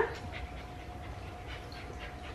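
Faint sounds of a small dog moving about close by, over a thin, steady hum.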